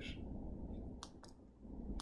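Low room tone with one short, sharp click about a second in, and a fainter click just after it.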